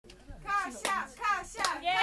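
A voice giving short sing-song syllables in a rhythm, cut by two sharp hand claps about 0.8 s apart.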